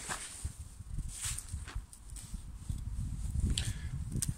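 Footsteps on grass and light rustling and clicks from handling the tent's fabric and guy line, over an uneven low rumble.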